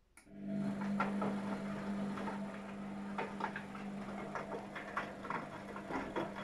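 Luxor WM 1042 front-loading washing machine starting up suddenly after a silent pause in its cycle: a steady hum with irregular clicks and splashing from water and wet laundry in the drum.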